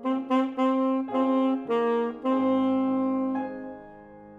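Saxophone entering with a phrase of several short notes, then one long held note that fades out in the last second.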